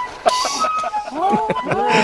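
Women laughing, starting about halfway through, after a short hiss early on.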